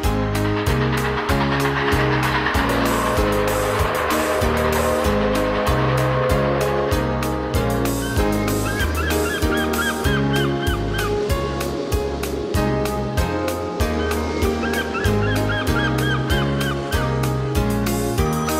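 Geese honking in short repeated calls, in two runs, one about halfway through and one near the end, over an instrumental children's-song backing of bass and drums. A rushing noise fills the first few seconds.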